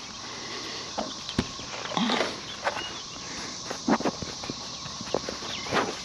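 Scattered footsteps and short handling knocks and rustles, irregularly spaced, over a steady background hiss.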